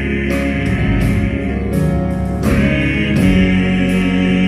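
Male southern gospel quartet singing in close harmony, holding long notes, with piano accompaniment; the chord swells fuller and louder about two and a half seconds in.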